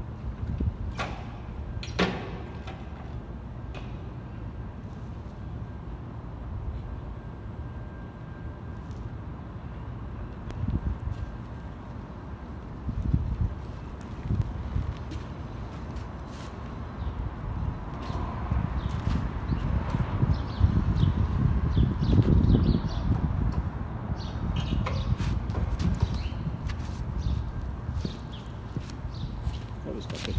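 Cruiser motorcycle engine running as the bike rides slowly around a concrete parking garage, a low rumble that grows louder about two-thirds of the way through. A few sharp knocks near the end.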